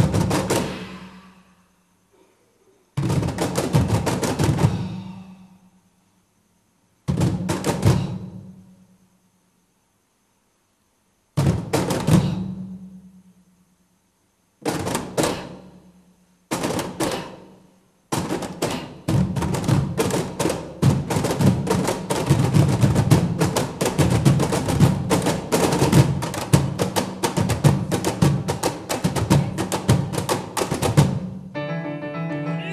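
Ensemble of Peruvian cajones struck together in short flurries of rapid slaps, each ringing off into silence, six times with pauses between. About 18 seconds in, the drums settle into a continuous festejo rhythm.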